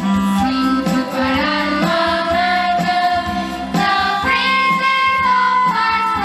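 Student choir singing with a bamboo flute (bansuri) played into a microphone, over a steady low drone and a faint regular beat about once a second.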